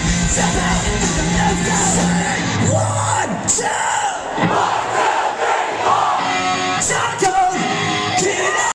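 Live punk rock band playing loudly through a club PA, with guitars, bass, drums and shouted vocals, picked up by a small camcorder in the crowd. About two and a half seconds in the bass drops away and yelling voices and crowd noise take over.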